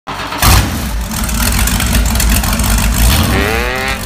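A loud engine revs with a heavy low rumble, starting abruptly about half a second in. Near the end a pitched sound with a wavering pitch comes in.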